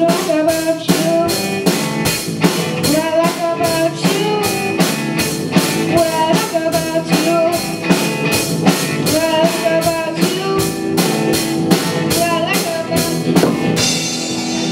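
Live rock band of electric guitars, bass guitar and drum kit playing an up-tempo song, with a steady driving drum beat and a short melodic phrase repeated over it.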